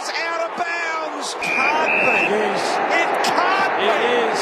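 Voices go on throughout, and about one and a half seconds in a loud steady din joins them, with two short high tones.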